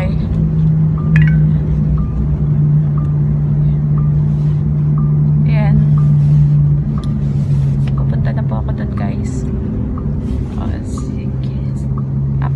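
Steady low hum of a car heard from inside the cabin, with a faint regular tick repeating through it.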